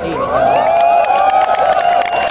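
A crowd cheering and whooping, many voices at once with clapping, growing louder just after it begins.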